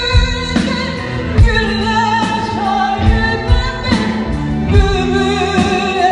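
A woman singing with a live band: long held notes with vibrato over drums, bass and guitars.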